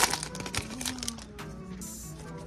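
Pokémon trading cards being handled and slid apart by hand: a sharp crackle right at the start, then a few soft clicks and rustles. Quiet background music with steady held tones runs underneath.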